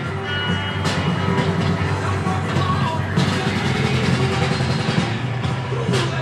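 Background music with steady low notes.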